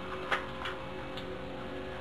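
A faint steady hum with a few light clicks; the clearest click comes about a third of a second in.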